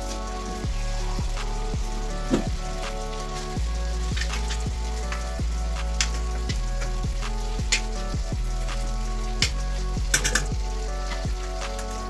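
Chicken pieces sizzling in a stainless steel frying pan while a metal spoon stirs them, knocking and scraping against the pan every second or two. Background music with a steady beat plays under it.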